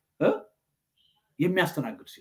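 A man's speech: a short syllable, a pause of about a second, then a few more words.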